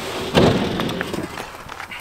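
Heavy thud as a whole hog wrapped in chicken wire drops onto the grill grate of a cinder-block pit, about half a second in, followed by quieter shuffling as it settles.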